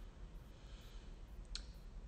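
Quiet room tone with a low steady hum and a single short click about a second and a half in.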